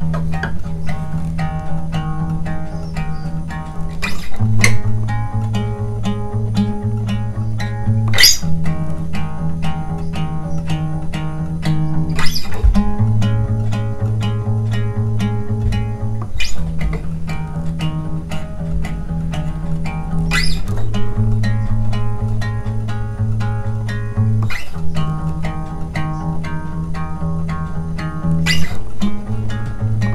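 Acoustic guitar picked in a repeating pattern: a low bass string, then two higher strings together, over and over. The bass moves to a new chord shape about every four seconds, with a sharper strum-like stroke at each change.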